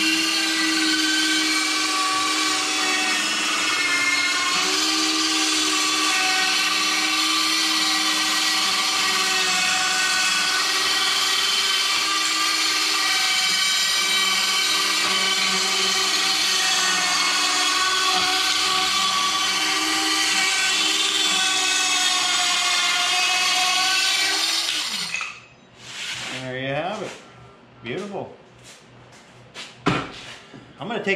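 Makita cordless circular saw running with a steady whine as it crosscuts across the wooden toboggan slats, its pitch sagging a little under load now and then. About 25 seconds in it is switched off and the blade winds down.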